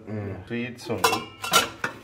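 Stainless-steel cloche covers being lifted off plates on a tray, metal clinking against metal and china in a few sharp clinks.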